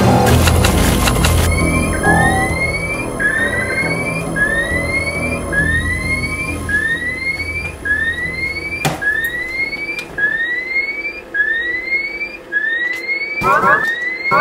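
Electronic sound effect: short rising chirps repeating evenly about once every 1.2 seconds, in the manner of a sci-fi control-console signal, while background music fades out in the first two seconds. A single sharp click comes about nine seconds in, and a quick run of warbling tones near the end.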